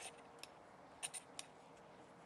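Small plastic packet crinkling and clicking in a hand as it is set down on a log: a few short, crisp ticks, the loudest three close together just after a second in.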